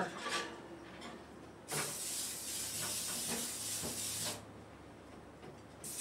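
Aerosol cooking spray hissing onto a metal baking tin in two sprays. The first lasts about two and a half seconds, and the second starts near the end.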